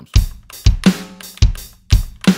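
Sampled acoustic drum kit in the Impact XT drum sampler, played live from a computer keyboard in a simple beat. Kick drum hits with a closed hi-hat land about every half second, with a snare hit a little under a second in.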